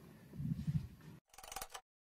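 Muffled handling noise and rustling from a hand-held camera being moved, ending abruptly in dead silence at an edit cut.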